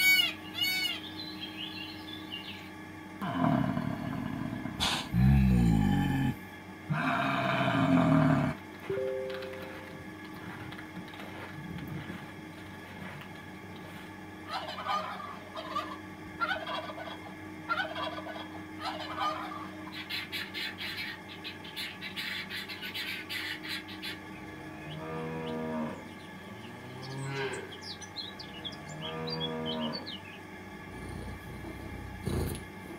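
A run of animal calls: loud calls from a peacock in the first several seconds, then a domestic turkey gobbling in quick rattling bursts through the middle, then a cow mooing near the end.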